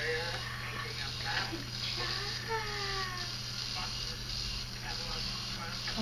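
Battery-powered spinning toothbrush running with a steady low hum while brushing a toddler's teeth, with faint voices underneath.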